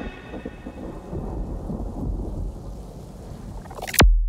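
Thunderstorm-like rumble with a rain-like hiss, an effect laid in the track's outro once the beat has stopped. It swells a little midway, then a sudden loud low hit comes at the very end.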